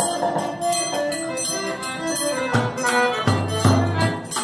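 Live accordion music with a pandeiro frame tambourine keeping a steady beat, and deeper low notes joining near the end.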